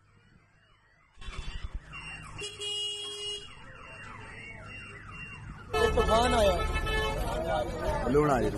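Car alarm sounding: a fast run of repeated falling chirps that switches, about two-thirds of the way through, to a louder repeated rising-and-falling wail.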